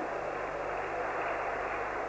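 Steady hall ambience of a sports arena: an even background noise with no distinct events.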